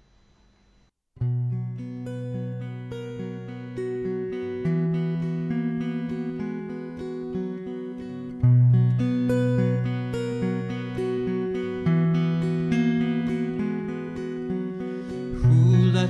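Solo acoustic guitar starting after about a second of near silence and playing an instrumental introduction to a song. A man begins singing right at the end.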